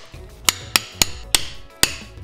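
A chisel driven into a wooden branch with a mallet: five sharp, separate strikes at an uneven pace, carving and splitting the wood.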